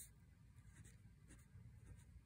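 Faint scratching of a pen writing on notebook paper, in a few short strokes.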